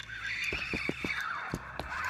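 Fishing reel buzzing steadily for about two seconds, with a handful of sharp clicks, while a hooked crappie is fought on a long crappie rod.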